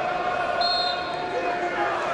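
A referee's whistle blown once, short and high, about half a second in, signalling the kick-off, over a steady din of crowd voices.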